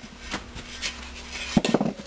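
Light metal clinks and rubbing as a Maytag Model 92 flywheel is handled and set down on a cloth-covered workbench, with a louder knock about one and a half seconds in.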